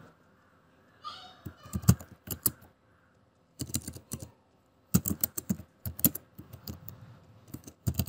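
Typing on a computer keyboard: clusters of key clicks with short pauses between the words.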